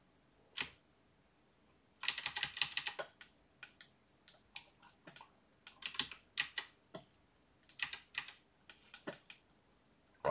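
Computer keyboard keys and mouse buttons clicking in irregular bursts: a single click about half a second in, a quick run of clicks around two to three seconds, then scattered clicks until near the end.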